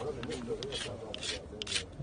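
A series of short rubbing strokes: hands working over a hard surface close to the microphone.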